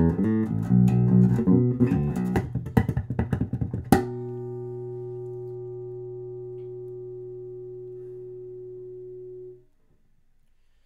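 Gibson Victory electric bass closing the song: a busy run of notes ending on a sharp final hit about four seconds in. A single note is then left ringing for about five seconds before it is cut off.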